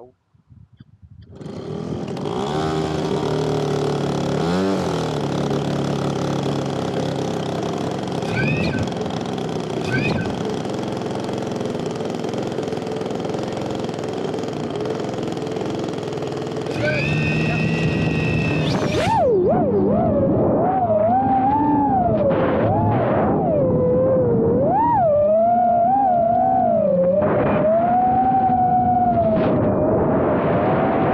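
The model plane's two-stroke chainsaw engine starts about a second and a half in and runs steadily with its propeller, revving higher a little past halfway. About two-thirds through, the sound switches abruptly to a whine from the chase quadcopter's motors, rising and falling in pitch.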